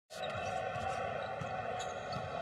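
A basketball dribbled on a hardwood court, a few soft bounces, over a steady hum of arena background noise.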